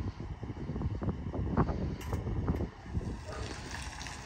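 Wind buffeting the phone's microphone: an irregular low rumble that comes in gusts, strongest in the middle.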